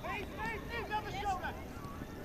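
Footballers calling out to each other on the pitch: several short overlapping shouts from different voices over a steady low rumble of outdoor noise.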